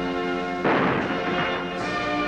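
A single cannon shot of a gun salute, a sudden blast about two-thirds of a second in that dies away over about a second, over a military band playing with brass.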